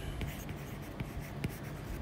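Stylus tip tapping and sliding on a tablet's glass screen while handwriting a word: a few faint, light ticks over low background noise.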